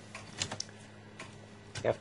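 A few light, irregular clicks and taps over a faint steady hum.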